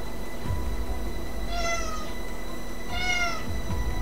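A cat meowing twice, each meow about half a second long, the second about a second after the first.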